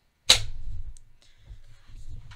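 Industrial single-needle sewing machine: a sharp clack about a third of a second in, then a low running rumble that fades within about a second.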